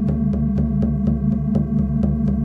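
Electronic meditation music: a low synthesized drone of steady tones, pulsing evenly at about five beats a second.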